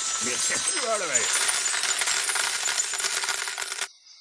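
Slot game win sound effect from Gonzo's Quest: a dense shower of clinking gold coins that cuts off suddenly near the end. A short voice-like cry comes in the first second or so.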